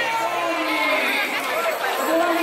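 A crowd of many people talking and shouting at once, voices overlapping in a steady babble.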